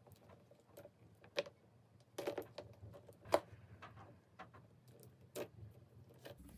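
Croc-embossed leather handbag strap being lengthened by hand through its adjuster: irregular soft clicks and taps of the metal strap hardware with the strap rubbing, the loudest a little after three seconds.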